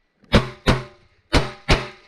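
Four revolver shots fired in two quick pairs, about a second apart, each sharp crack followed by a short ringing tail.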